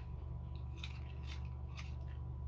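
A few faint, short clicks of small objects being handled, about half a second apart in the second half, over a steady low hum.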